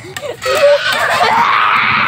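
Young children's voices, then a loud, drawn-out shriek from about half a second in.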